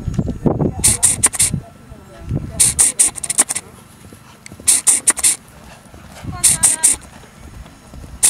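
Low, indistinct voices, broken about every two seconds by a group of three or four short, sharp hissing bursts. The hissing bursts are the loudest sound.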